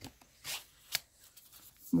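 Brief rustles of a printed card sleeve of a coin mint set being handled, with a sharp click a little under a second in.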